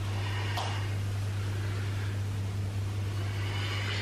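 Steady low electrical-type hum under a faint even hiss, with one brief click about half a second in.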